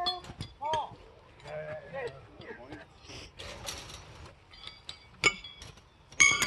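Steel pitching horseshoes clinking together as they are gathered up from the pit: a few light metallic clinks, then one sharp ringing clink about five seconds in.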